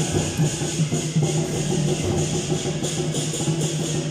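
Traditional procession percussion playing continuously: drums and gongs under a steady wash of clashing cymbals, the kind of band that accompanies a temple-procession lion dance.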